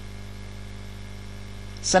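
Steady electrical mains hum on the microphone's recording, a low buzz of evenly spaced steady tones with nothing else over it until a man's voice starts right at the end.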